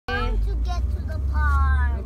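A person's voice talking, with the pitch falling on the last phrase, over the low, steady rumble of a car cabin while driving.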